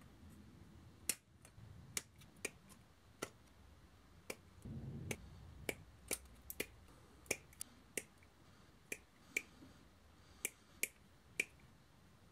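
Sprue cutters snipping white plastic model-kit nacelle parts off their sprue: a string of sharp, irregularly spaced snips, roughly one or two a second, with a brief low rumble about five seconds in.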